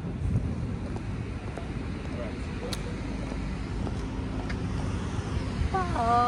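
Low, steady outdoor background rumble with a few faint clicks, and a voice calling out near the end.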